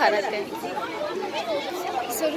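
Chatter of several people talking at once, overlapping voices with no single clear speaker.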